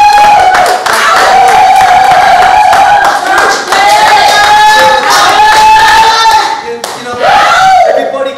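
A small group clapping while a voice holds loud, drawn-out whooping cheers, several long 'woo's one after another, the last one near the end.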